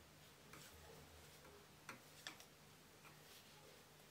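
Faint clicks of wooden knitting needles tapping together as stitches are knitted two together, a handful of light ticks with the two clearest near the middle, over near silence.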